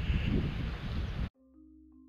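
Wind buffeting the camera microphone, with a heavy low rumble, cut off abruptly a little over a second in. Quiet background music of held, stepping notes follows.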